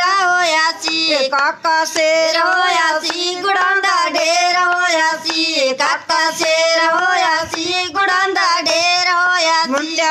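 A girl's high voice singing a Punjabi Lohri boli (folk verse) with no instruments, phrase after phrase with brief breaths between. Hand claps keep time.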